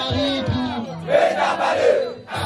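A crowd shouting and cheering together, with a man's voice calling out through a microphone and PA. The crowd's shout swells loudest about a second in.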